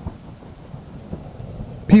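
Thunderstorm ambience: a low, steady rumble of thunder with rain.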